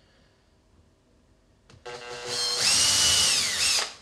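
Cordless drill boring a pilot hole into the plywood cabinet side for a drawer slide screw. It starts about halfway in, runs up to a steady whine, and its pitch sags slightly just before it stops near the end.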